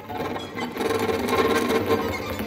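Experimental live music for string trio and electronics: a dense, fast rattling texture that grows louder about a second in.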